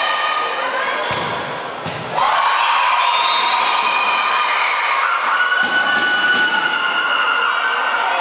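A futsal ball is struck once about a second in, followed from about two seconds on by loud, long held shouts and cheering from spectators as the goal goes in, with a few more knocks of the ball or boards on the hard court.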